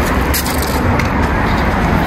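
Street traffic noise: a steady wash of passing cars with a strong low rumble.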